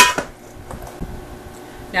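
Plastic chopper container knocking against a stainless steel mixing bowl as diced cucumber is tipped in: a sharp clank with a brief metallic ring and a second lighter tap. A soft thump follows about a second later.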